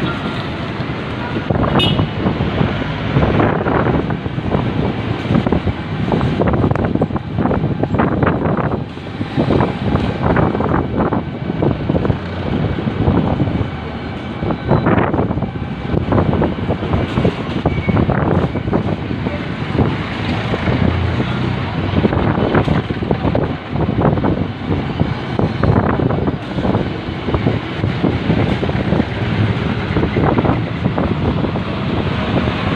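Ride-along sound of a motorcycle moving through town traffic: steady engine and road noise that surges unevenly, with passing traffic around it.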